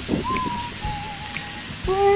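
Lamb and green peppers sizzling on a dome-shaped cast-iron jingisukan grill over a portable gas burner: a steady frying hiss. Near the end a man hums a long, appreciative "mmm".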